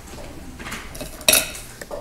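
A single sharp clink of a hard object a little over a second in, with a few fainter ticks, over low room noise.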